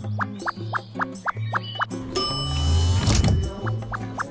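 Bouncy cartoon background music with a steady plucked beat and bass line. About two seconds in, a rushing whoosh sound effect swells over it for about a second and cuts off, marking a scene transition.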